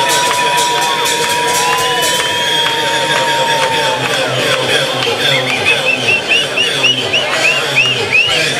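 Loud electronic dance music from a DJ set on a club sound system, with a crowd cheering and shouting over it. A long held synth tone sounds through the first half, then a quick run of short rising chirps near the end.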